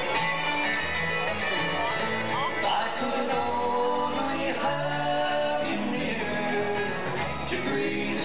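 Live bluegrass band playing: acoustic guitars, mandolin and upright bass.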